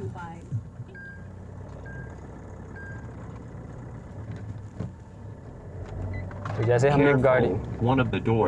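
Mahindra XUV500's engine running with a steady low hum inside the cabin, and three short electronic warning beeps about a second apart near the start: the alert for a door left open. A voice begins near the end.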